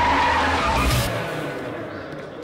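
A small electric airport cart skidding as it brakes, its tyres squealing on a smooth floor. The noise is loud for about a second, then fades away.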